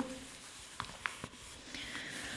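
Pages of a small paperback book being leafed through: a few faint paper rustles and soft ticks.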